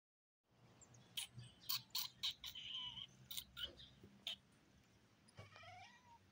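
A run of quick sharp clicks and short high squeaks, then a cat's short rising meow near the end.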